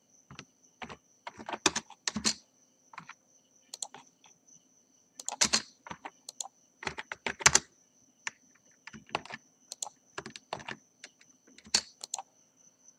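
Computer keyboard and mouse clicking and tapping in irregular small clusters as a drawing program is worked, with a faint steady high whine underneath.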